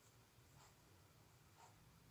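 Near silence: room tone with faint, soft scratchy sounds about once a second.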